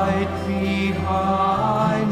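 A slow, chant-like sung prayer: a voice holding long, gently wavering notes over a steady low drone.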